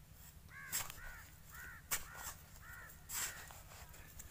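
A bird calls about five times in quick succession, short arched calls roughly half a second apart. Three scrapes and knocks of a hand trowel digging into dry soil are heard about a second in, near two seconds, and past three seconds.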